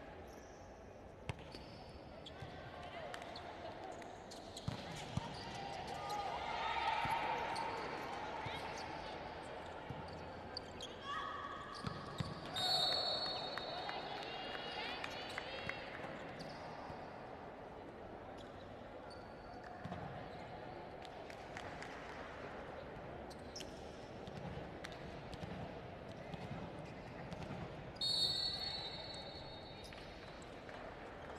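Indoor volleyball court sound between rallies: a volleyball bouncing on the court floor in scattered sharp knocks, short high squeaks of shoes on the court, and a murmur of players' and spectators' voices.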